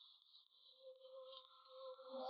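Near silence: a faint steady high-pitched background tone, with no scissor snips heard.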